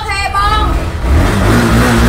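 Dual-sport motorcycle engine revving up about a second in, a low pulsing beat with its pitch rising.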